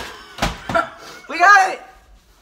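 A head striking a box: two sharp smacks about half a second apart, followed by a loud, short vocal cry.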